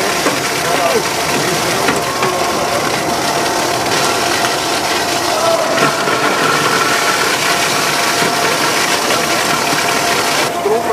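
Steady machine hum with faint whining tones held level through it, under indistinct crowd chatter.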